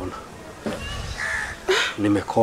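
Brief harsh bird caws, about a second in and again near the end, heard under a pause in a man's speech.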